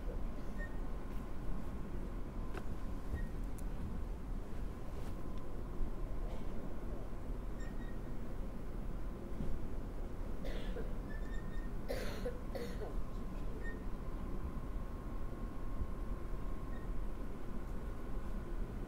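Room tone of a quiet hall: a steady low hum with a faint steady tone above it, a few faint clicks, and a couple of short noises, perhaps a cough, about ten and twelve seconds in.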